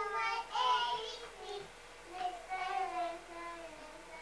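A young child singing in a high voice: two drawn-out phrases with gliding notes, split by a short pause about halfway through.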